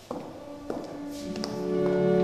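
A few light knocks, then a church organ comes in about halfway through with held chords that grow louder.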